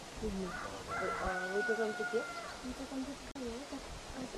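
A rooster crowing once, starting about a second in: one long, level, high call of about a second and a half, over people talking.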